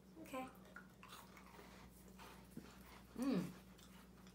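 Faint chewing of tiny crisp strawberry-cream-filled biscuits: a few soft short crunches over a low steady room hum.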